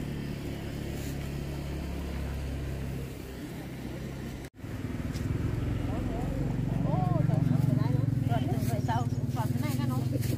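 A vehicle engine idling nearby, a steady low hum, with people talking over it in the second half.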